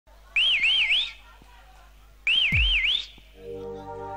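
A high, whistle-like warbling tone sounds twice, each burst under a second long with about three rises and falls. A deep boom slides down in pitch under the second burst. Near the end, held keyboard chords begin as a band's intro.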